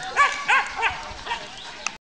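A dog barking four times in quick succession, then a short click near the end.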